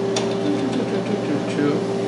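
Steady electrical hum with a constant mid-pitched tone from the powered bench test equipment, with one short click near the start.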